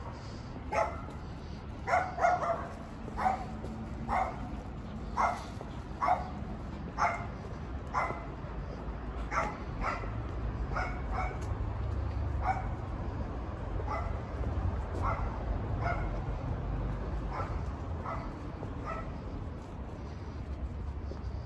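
A dog barking repeatedly, about once a second, louder over the first several seconds and fainter later on.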